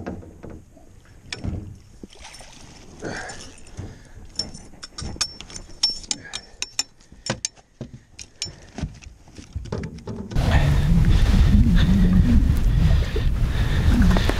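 Irregular clicks and knocks of a landing net, rod and tackle being handled in an aluminium boat with a freshly netted lake trout. About ten seconds in this gives way suddenly to a steady, louder rumble of wind on the microphone.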